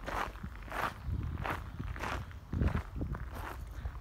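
Footsteps on a gravel path at a steady walking pace, about one and a half steps a second.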